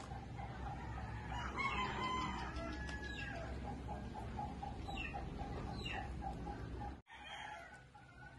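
Rooster crowing once, about a second and a half in, over a fast, steady pulsing chirr; the sound cuts out abruptly near the end.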